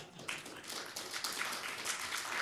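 Audience applauding: many hands clapping in a dense, steady patter, quieter than the speech around it.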